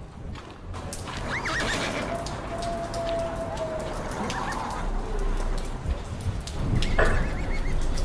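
A horse whinnying twice, about a second and a half in and again near the end, over hooves clip-clopping.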